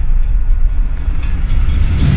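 Sound-design logo sting: a loud, deep bass rumble that holds steady, with a short burst of hiss starting right at the end.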